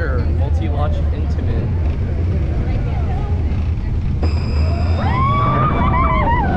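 Roller coaster train running along its track with heavy wind rush and low rumble on the rider-worn camera. About four seconds in, a steady high whine starts as the train is launched by its linear motors, and riders yell near the end.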